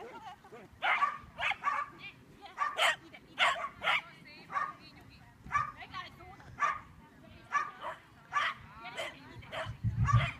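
A small dog barking over and over while running, in short, sharp barks about one to two a second.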